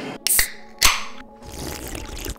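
An aluminium drink can being cracked open: a sharp click of the tab, then about half a second later a louder, short pop and hiss of escaping carbonation.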